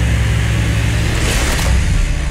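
Electric jigsaw running steadily, its blade cutting through plywood.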